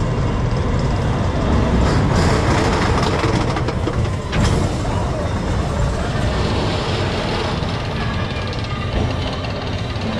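Big Thunder Mountain mine-train roller coaster cars rolling past on their steel track: a loud, steady rumble with clattering wheels, heaviest from about two to four seconds in, with a sharp clack about four seconds in.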